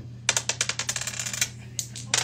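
A pair of dice clicking and rattling in a shooter's hand during a craps game: a quick run of sharp clicks lasting about a second and a half, then one more click near the end.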